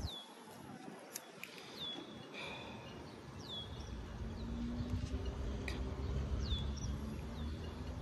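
A bird calling over and over: a short, high whistle that drops in pitch and then levels off, heard about four times. A low rumble on the microphone runs under it from partway through.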